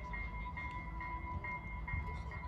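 Electronic warning signal: a steady high tone with a higher beep repeating a little over twice a second, typical of a railway crossing signal as a train approaches, over a low rumble.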